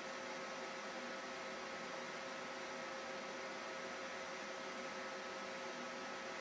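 Steady hiss with a faint electrical hum and a couple of thin steady tones: the background noise of the recording, with no other event.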